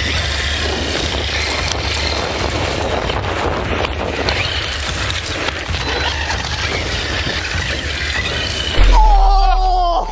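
Traxxas X-Maxx electric RC monster truck driving at speed: tyre and drivetrain noise over gravelly pavement with a faint high motor whine, and heavy wind rumble on the following camera's microphone. Near the end the sound gets louder, with a deep rumble and a whine that falls in pitch.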